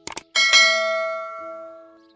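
Subscribe-animation sound effect: a quick double mouse click, then a notification bell chime that rings out and fades over about a second and a half.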